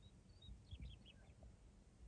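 Near silence with a faint bird calling: a couple of short high chirps, then a quick run of falling notes about three-quarters of a second in.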